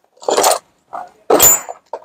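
Metal hand tools clinking and scraping against each other in four short clatters, the third the loudest with a brief metallic ring: tools being rummaged through in search of the brake caliper piston compressor.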